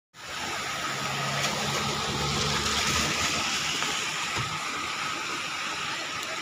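Brown floodwater rushing over a submerged road causeway: a steady, even hiss of fast-moving water. A low steady hum runs underneath through the first half.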